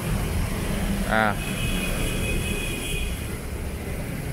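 Steady low rumbling background noise, with a short voice sound about a second in and a faint high whine in the middle.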